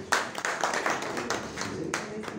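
A small audience clapping by hand, with voices over it; the clapping dies away near the end.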